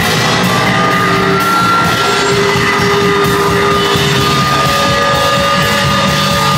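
Hardcore punk band playing live: distorted electric guitars, bass guitar and drum kit, loud and dense throughout, with a few long held notes ringing over the mix.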